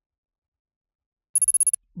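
Silence, then, at about a second and a half, a short, bright bell-like chime trilling rapidly for under half a second. It is a transition sound effect as the next word card comes up.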